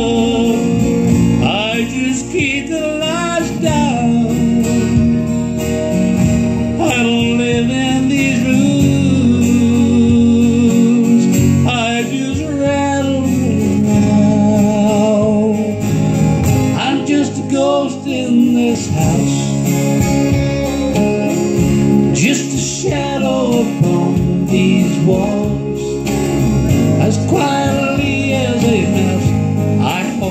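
Country ballad performed live: strummed acoustic guitar over fuller backing music, with a man's singing voice coming and going in wavering melodic phrases.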